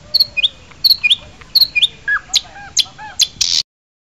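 Small bird calling: a short chirping phrase with quick pitch glides, repeated three times, then a run of lower, arched whistled notes. A brief hiss near the end cuts off suddenly.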